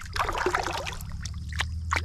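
A smallmouth bass splashing in shallow water as it is released from the hand, followed by a few small drips and clicks, over a steady low rumble.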